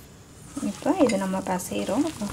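A hand mixing soaked sago dough in a steel bowl, with a woman talking from about half a second in.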